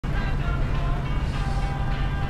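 A moving car's steady low engine and road rumble, with background music over it.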